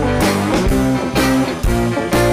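Live rock band playing: electric guitars and bass holding chords over a drum kit, with a strong beat about twice a second.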